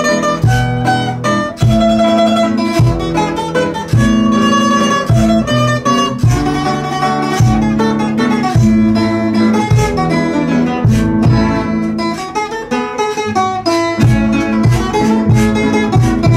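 A classical guitar and a smaller plucked string instrument playing an instrumental tune together, a steady run of plucked notes over a bass line.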